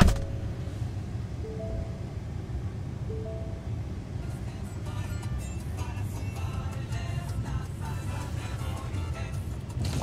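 Inside the cab of an idling Ford truck: a sharp knock right at the start, then a two-note dashboard chime sounding three times over the low engine rumble. About four and a half seconds in, music from the truck's stereo comes in and plays on.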